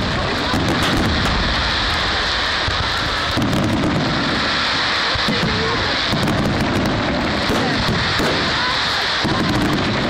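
Fireworks display: aerial shells bursting with four low, rumbling booms about three seconds apart, over a steady hiss.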